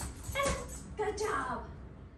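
A dog's high-pitched whines and yips: a short cry about half a second in and a longer, bending whine about a second in.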